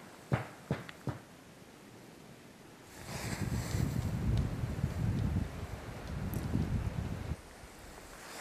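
A few sharp knocks in the first second, then wind buffeting the microphone with a low rumble for about four seconds, cutting off suddenly near the end.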